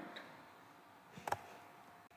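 Faint computer keyboard keystrokes: a light click near the start and one sharper keystroke about a second and a quarter in, over a low steady hiss.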